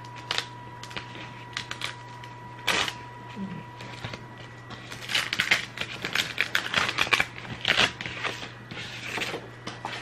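Crackling and rustling of a sheet of glitter vinyl being handled and lifted from a sticky cutting mat, in scattered bursts that come thickest from about five to nine seconds in. Under it runs a steady low hum.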